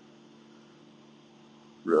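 A pause in a man's narration with only a faint, steady low electrical hum and hiss; his speech resumes near the end.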